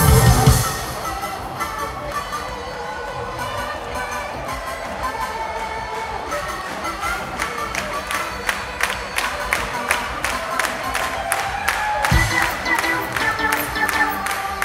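Live rock band with a cheering festival crowd: the loud full band drops out about half a second in, leaving a quieter breakdown of held tones over crowd noise. A sharp, steady beat comes in about six seconds in and grows louder.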